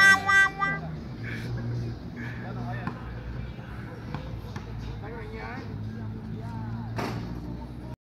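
A loud passage of held musical notes cuts off about a second in. Then the open-air sound of a pickup basketball game: distant men's voices and a few sharp knocks, the loudest near the end.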